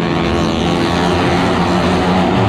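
Motorcycle engine running at steady high revs, a constant drone, as a rider circles the near-vertical wooden wall of a well-of-death show.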